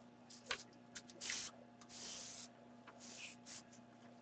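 Faint handling noises: scattered light clicks and three short soft rustles, over a steady low hum.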